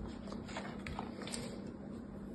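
Moulded kinetic sand being handled: a few faint, scattered small ticks and crumbles as a turtle-shaped sand casting is lifted from the tray, over a steady low hum.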